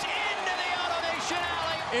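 Ballpark crowd cheering and shouting as a two-run home run clears the outfield wall.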